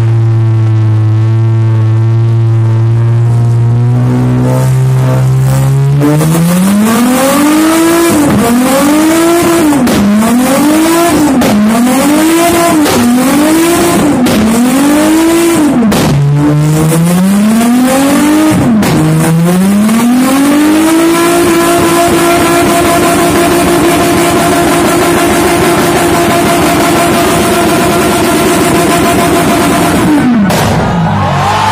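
Car engine revving hard through a burnout, its spinning tyres raising thick smoke. The engine holds a steady note at first, then climbs and rises and falls about once a second for some twelve seconds. It then climbs again and is held at high revs for the last nine seconds.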